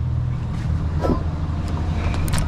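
Chevrolet 3500 pickup truck's engine idling with a steady low hum, with a faint click near the end as a door is opened.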